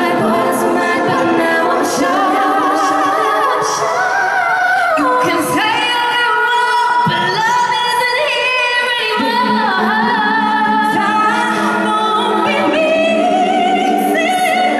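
Female pop vocal group singing live, several voices in harmony with long held notes that waver in the middle.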